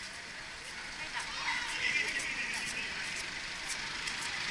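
Street traffic: an approaching car's engine and tyre noise, growing slowly louder, with faint voices now and then.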